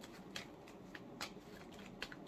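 Tarot cards being shuffled by hand: a faint, soft shuffling with a few light clicks of cards against each other.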